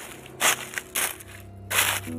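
Dry fallen leaves crunching in about four short, separate bursts.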